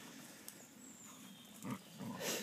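Dog playing with a stick in fallen leaves: faint rustling and scraping, with one short sound from the dog near the end.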